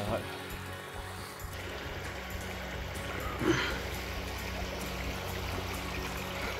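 Shallow stream trickling over stones, under faint background music; a person makes a brief voice sound a little past halfway.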